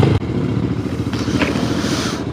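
Motorstar Z200X motorcycle engine running at low speed near idle as the bike slows and pulls up.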